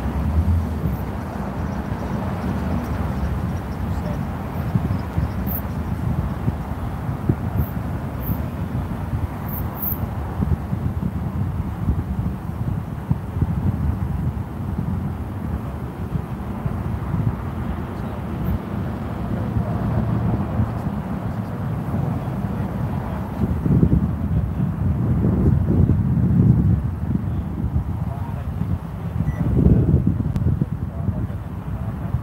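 Outdoor roadside ambience: a steady low rumble of wind on the microphone and passing street traffic, with louder bursts near the end.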